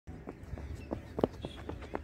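Running footsteps of a cricket bowler's run-up: a string of short thuds, about three or four a second.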